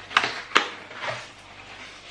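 A small cardboard box being opened by hand: two sharp snaps as the tucked lid comes free, then faint scraping of cardboard.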